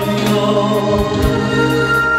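Christian gospel ballad performed live: a male voice singing over instrumental accompaniment with held notes and a steady beat.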